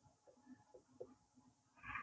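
Near silence, with a few faint soft taps of a marker writing characters on a whiteboard and a brief, louder hiss-like sound near the end.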